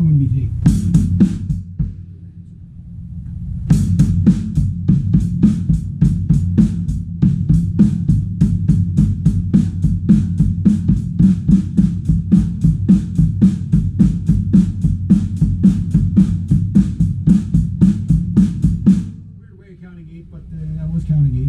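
Acoustic drum kit played as a double bass pedal exercise: a short flurry of strikes, a brief pause, then a long, even run of bass drum strokes under regular stick hits of about three a second, stopping just before the end.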